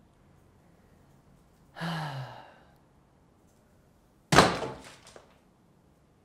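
A short sigh with falling pitch about two seconds in, then one loud rubber-stamp thunk with a brief ring a couple of seconds later.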